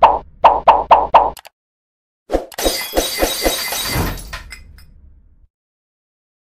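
Sound effects of an animated subscribe/like end screen: a quick run of about five knocks, then after a short gap a crash-like burst with a rapid rattle of hits that fades away over about two seconds.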